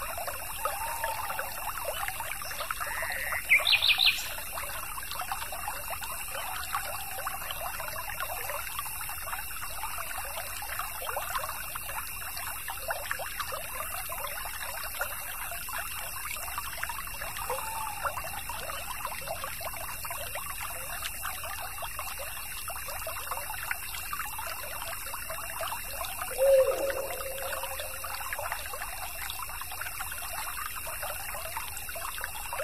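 Stream water trickling and babbling steadily. A bird call rises into a quick trill about three to four seconds in, and another short, lower call comes near the end.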